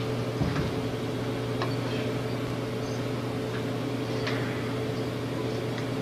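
Steady electrical hum with a few faint, short ticks.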